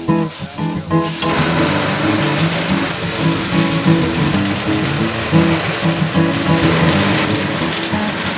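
Background music, with the rushing, rain-like churn of a portable concrete mixer turning a batch of concrete mix coming in about a second in.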